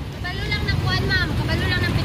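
Steady low rumble of a motorcycle tricycle's engine idling close by, with another person's voice talking faintly over it from about a third of a second in.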